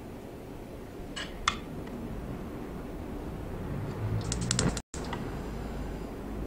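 A metal spoon clicking against a frying pan and an egg bowl as egg-dipped meat patties are laid in: two light taps about a second in, then a quick rattle of clicks a little after four seconds that ends in a sudden cut.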